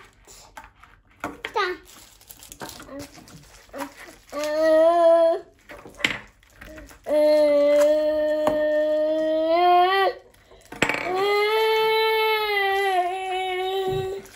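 A young child's voice holding three long, drawn-out sung notes, the last two about three seconds each, steady in pitch and bending up at the end. Faint clicks of plastic capsules come in between.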